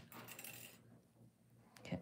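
Faint small metallic clicks and scratching of thin craft wire being pulled and threaded through a wire-wrapped pendant, mostly in the first second, then near quiet.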